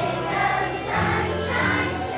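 Children's choir singing a holiday song over instrumental accompaniment.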